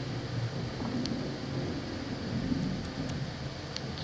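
Steady low room noise with a faint hum, broken by two faint clicks, one about a second in and one near the end.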